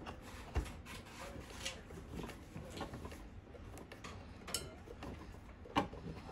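Faint clicks and rubbing of fingers handling a mountain dulcimer's tuner peg and new string at the wooden scrollhead, with a light knock about half a second in and another click near the end.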